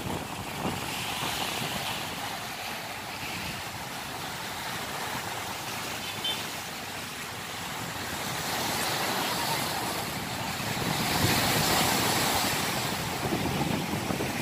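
Waves washing against a rocky seawall, with wind on the microphone; the steady rush of noise swells in the second half.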